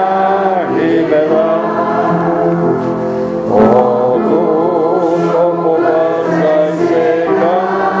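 A congregation singing a hymn together in slow, held phrases, with a new line starting about three and a half seconds in.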